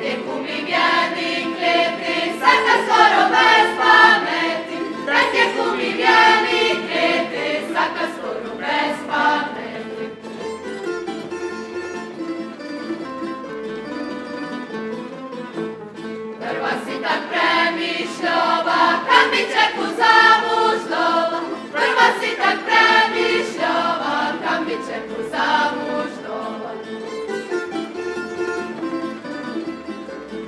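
A group of voices singing a Međimurje folk round in unison, accompanied by a tamburica band. There are two long sung verses, and between and after them the tamburas play alone.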